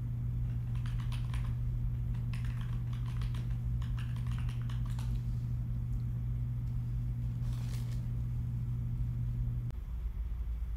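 Computer keyboard typing picked up on an open commentary microphone, in bursts of quick clicks during the first half, over a steady low electrical hum that cuts off abruptly near the end.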